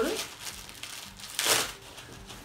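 Rustling and crinkling as a pair of white trousers is picked up and handled, with one louder rustle about a second and a half in.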